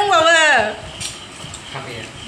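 A person's voice calls out with a falling pitch in the first half second or so, then quieter clinking and handling of plates and bowls as food is picked up from them.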